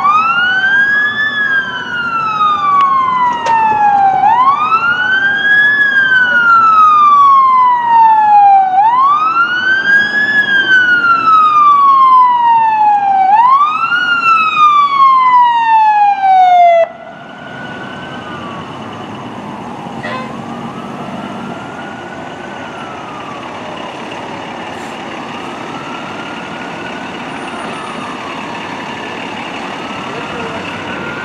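Fire engine siren on wail: each cycle rises quickly, then falls slowly, and repeats about every four and a half seconds. It cuts off suddenly about seventeen seconds in, leaving a much fainter siren wail over a steady background rumble.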